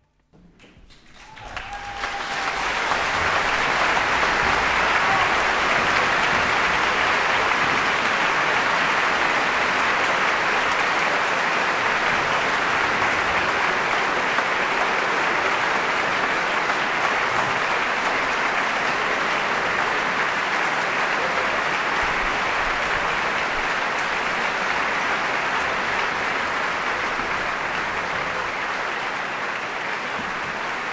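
Audience applauding at the end of a live musical number. It rises quickly from silence in the first two seconds, holds steady, and eases slightly near the end.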